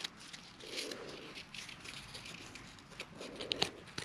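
Thin cardboard strips rustling and scraping against each other in the hands while a metal paper brad is worked through their holes, with a few small clicks near the end.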